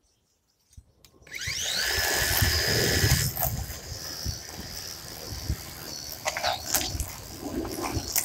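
Cordless electric string trimmer starting about a second in, its whine rising quickly to speed and holding steady, then dropping back to a lower, steady running sound as the line cuts through long grass. A few sharp ticks come near the end.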